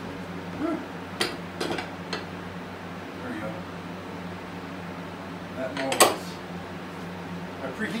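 Metal soft-plastic bait molds being handled on the workbench: a few sharp metal clinks and knocks, three in quick succession early and the loudest about six seconds in, over a steady low hum.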